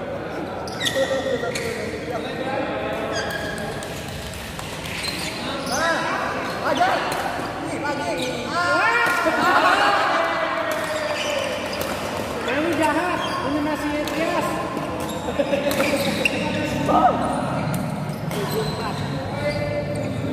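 Badminton play in a large hall: sharp racket strikes on the shuttlecock and players' footfalls on the court, under spectators' voices and shouts that rise to their loudest about halfway through.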